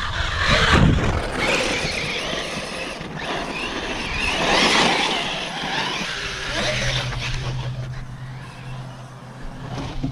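Arrma Talion brushless electric RC truck running hard on a 6S battery: the motor and drivetrain whine rises and falls with throttle over the noise of tyres churning dirt. It is loudest about a second in and again around five seconds.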